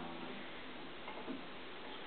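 Faint ticks and light handling noise of a capo being fitted onto an acoustic guitar's neck at the 2nd fret, with one small click about a second and a quarter in.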